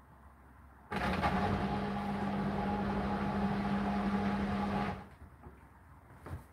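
Hotpoint NSWR843C washing machine running for about four seconds near the end of its cycle. It is a steady machine hum with a rushing noise on top, and it starts and cuts off abruptly.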